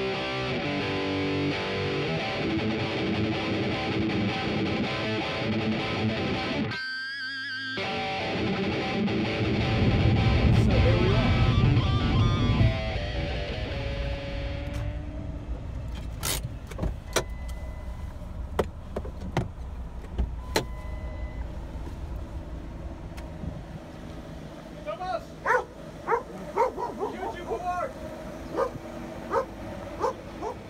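Plucked guitar music for roughly the first twelve seconds, with a car's low engine rumble coming up under it toward the end. Then it goes quieter, with scattered sharp clicks, and a dog barks repeatedly in the last few seconds.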